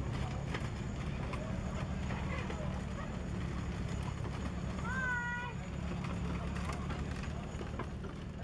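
Team of four Clydesdale horses walking on grass, pulling a wagon: soft hoof clops and scattered harness clinks over a steady low rumble. A short high call rises slightly, then holds, about five seconds in.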